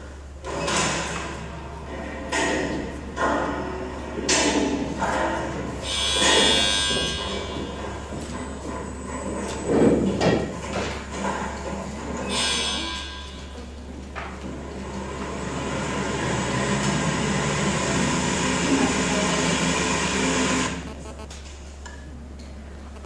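Soundtrack of a projected video playing through a hall's loudspeakers: sound effects and music, with a string of short sweeps, a loud hit about ten seconds in, and a steady sound that builds from about fourteen seconds and stops abruptly near the end. A constant low hum runs underneath.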